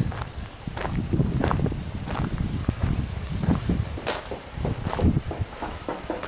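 Footsteps of someone walking from gravel onto a tiled porch and floor, a few sharper steps standing out at uneven spacing, over a low steady rumble.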